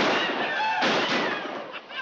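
Pistol shots fired in the air, two sharp reports about a second apart, each with a ringing tail, with men yelling between them.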